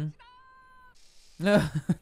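A faint steady tone for most of the first second, then a short loud vocal cry, high and whiny, about one and a half seconds in.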